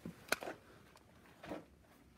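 A few light taps and knocks as a glass sublimation crystal block is handled, with one sharp, bright click about a third of a second in and a softer knock about a second and a half in.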